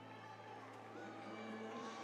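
Stadium ambience: overlapping voices of players and crowd, with music playing over the public-address system.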